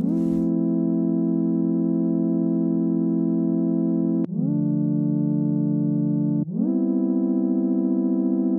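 A simple sine-wave synth made in Serum plays a slow, mellow chord progression: long held chords that slide briefly in pitch into each new chord through portamento, with the chords changing about four seconds in and again a couple of seconds later.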